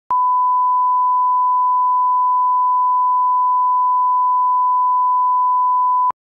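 A steady 1 kHz sine-wave line-up tone, the reference tone that goes with colour bars, holding one unbroken pitch.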